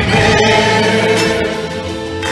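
Live Irish folk band with accordion, guitars and fiddle playing while several voices sing together on held notes.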